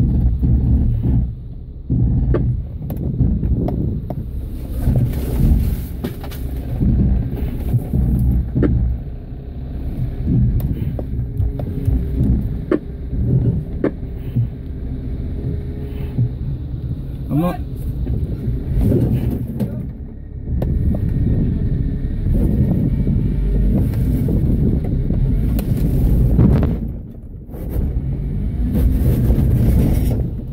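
Off-road vehicle's engine running at low speed as it crawls over boulders, a steady low rumble with a short lull near the end.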